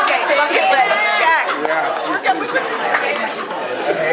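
Overlapping chatter of a roomful of people, several voices talking over one another.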